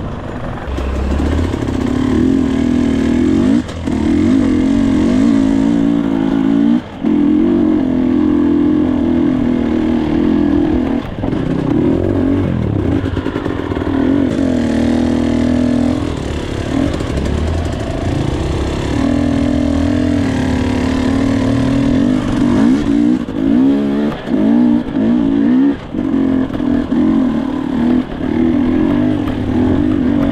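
Dirt bike engine running under a rider's throttle on a trail, its revs rising and falling. There are brief throttle cuts a few seconds in, and quicker on-off blips of the throttle over the last several seconds.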